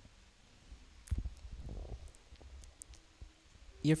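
A quiet hall with one low thump about a second in, a short low rumble and a few faint clicks. Near the end, a man's voice starts through the PA.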